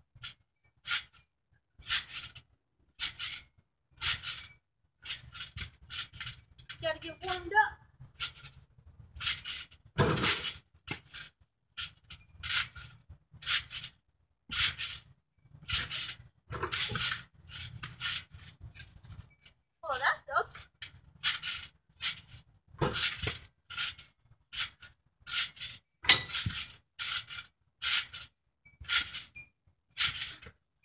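Trampoline springs and mat sounding with each bounce: a jangling clatter repeated at a steady rhythm of about one bounce a second.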